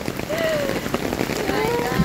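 Torrential rain pouring down onto a road and pavement: a dense, steady hiss of rain. A voice breaks in briefly over it.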